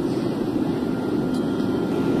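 A steady, even roar of air or machinery, heaviest in the low range, with no separate events.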